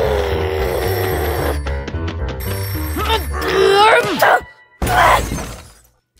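Cartoon soundtrack: background music under a character's wordless, pitch-gliding vocal noises, with a short run of sharp clicks about two seconds in. The sound breaks off a little past four seconds, then a short loud noisy burst follows.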